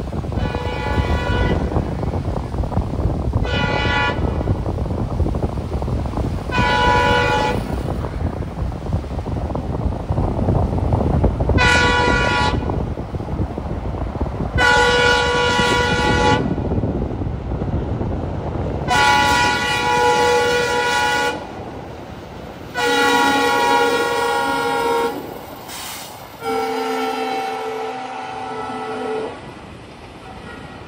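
Train horn blowing in about eight separate blasts, mostly getting longer as they go, the last two deeper in pitch. A steady rumble runs under the first blasts and drops away about two-thirds of the way through.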